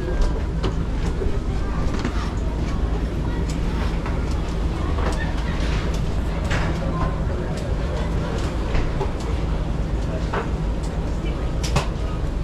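Escalator running with a steady low mechanical hum and scattered light clicks from its steps.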